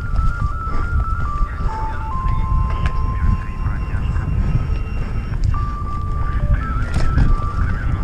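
Mountain bike descending a downhill trail: steady wind and rough trail rumble on the microphone, with a thin, high melody of held notes stepping between pitches over it.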